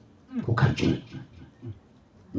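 A man's voice through a microphone: a brief utterance about a third of a second in, falling in pitch, followed by a couple of short, quieter sounds between pauses.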